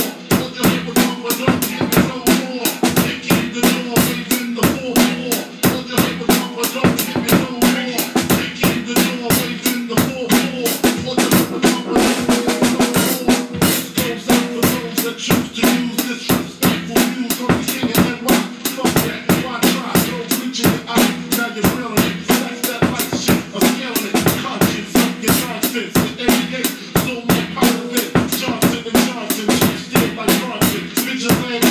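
Acoustic drum kit played in a steady hip-hop groove, with kick, snare and rim hits coming several times a second, over a backing track that holds a steady low note.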